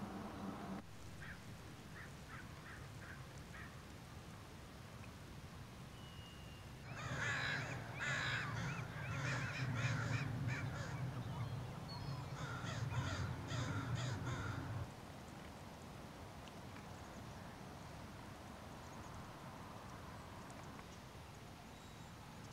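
A flock of crows cawing, many calls overlapping, from about seven seconds in until it stops abruptly about eight seconds later; a few faint calls come before it.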